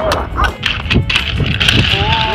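Toy roller skate wheels knocking and rolling on concrete as a small child takes unsteady steps, with a low rumble underneath.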